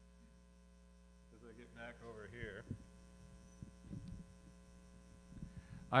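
Steady electrical mains hum through the hall's sound system, with a faint off-microphone voice briefly about a second and a half in and a few soft knocks and rustles in the second half.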